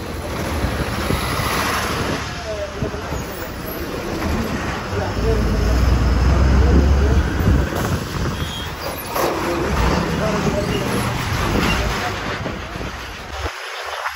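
Inside a moving city bus: steady engine hum and road noise as the bus drives through traffic, with faint voices in the cabin. The sound cuts out briefly near the end.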